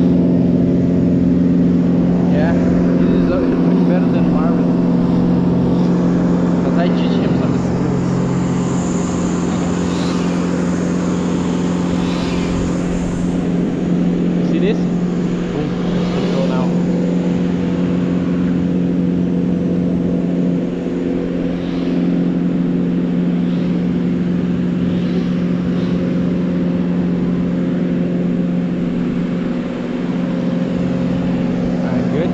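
An engine running steadily at a constant speed throughout, with faint voices over it.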